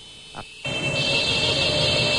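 Several tricycle horns blaring together in one long continuous honk, starting about a second in, over traffic noise.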